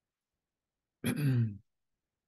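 A man clears his throat once, about a second in: a short sound, about half a second long, that drops in pitch.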